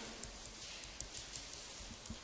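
Faint taps and light clicks of a stylus on a tablet PC screen during handwriting, over a steady background hiss.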